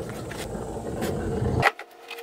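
Rustling and handling noise from a hand moving at the camera, ending with a click and a sudden cut about a second and a half in; steady background music tones start just before the end.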